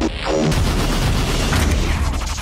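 Loud action-trailer soundtrack: music mixed with deep booms and gunfire-like blasts.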